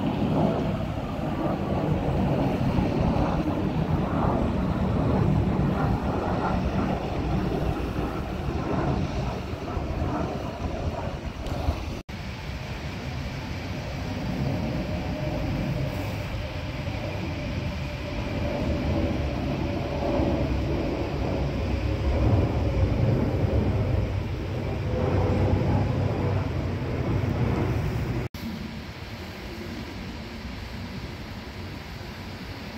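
Jet engines of twin-engine airliners flying overhead: a steady, loud, deep rumble. It breaks off abruptly twice, about 12 and 28 seconds in.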